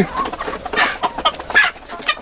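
A flock of white Leghorn chickens clucking, several short calls scattered through.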